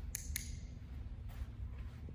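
TagTeach tagger clicking twice in quick succession, two short sharp clicks. The click marks the moment the handler's foot lands on the tape target.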